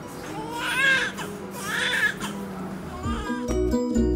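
Newborn baby crying: two long wavering wails and a short third one, over soft background music. Near the end the music picks up a steady beat.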